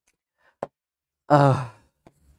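A man's short, voiced, sigh-like exhale lasting about half a second, coming about a second and a half in. It is preceded by a single short click.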